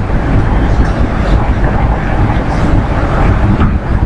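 Loud, steady low rumbling background noise with no speech; the source is not shown.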